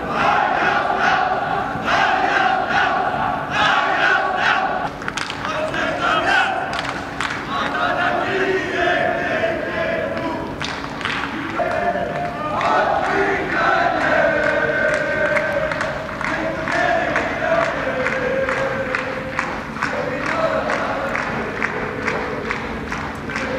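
Many men's voices shouting and calling together as a group, held calls overlapping, with frequent short sharp knocks among them.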